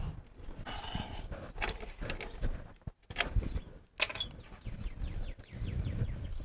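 Small steel pins and springs of a Richmond Lock Right lunchbox locker being handled at an open rear differential: a few sharp metallic clicks and clinks, scattered and spaced out, some with a brief high ring.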